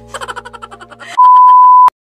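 A rapid run of clicks over a low hum, then a loud, steady single-pitch test tone of about 1 kHz that lasts under a second. It is the bars-and-tone beep of a TV colour-bars test pattern, used as an editing sound effect, and it cuts off abruptly with a click.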